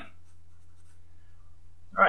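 Felt-tip marker writing on paper, with faint scratching strokes in the first second or so, over a steady low electrical hum.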